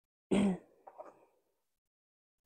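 A person clearing their throat once, briefly, followed by a few fainter short sounds.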